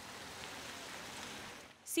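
Steady hiss of a car's tyres on wet pavement as it passes close by, fading out shortly before the end.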